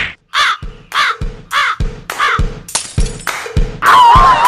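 Four short, harsh calls, each dipping and rising in pitch, about one every 0.6 s, over a steady low beat, with a noisier hiss in the last second.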